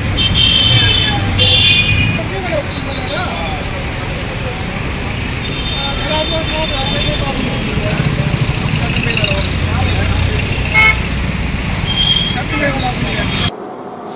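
Busy road traffic with vehicles running past and horns tooting: several short blasts in the first two seconds, more later on, and faint voices of people nearby. It cuts off suddenly shortly before the end.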